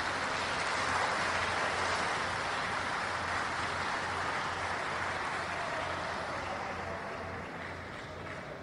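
Audience applauding: dense, steady clapping that slowly dies down.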